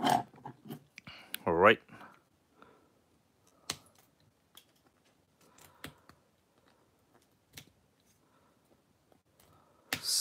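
Flush cutters snipping excess plastic off a 3D-printed part, giving sharp, separate snips every second or two. A short vocal sound comes about a second and a half in.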